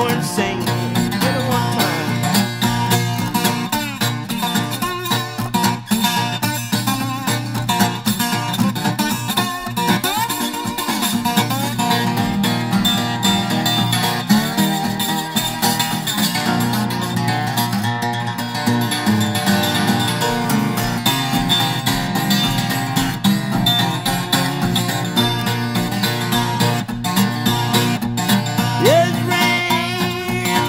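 Acoustic blues song in an instrumental break, with guitar playing and no singing.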